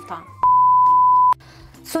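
A single electronic beep edited into the soundtrack: one steady, high, pure tone about a second long that starts and stops abruptly and is loud.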